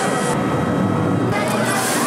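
Steady mechanical running noise of an amusement-park thrill ride in motion, mixed with the voices of people around it. The sound changes abruptly twice.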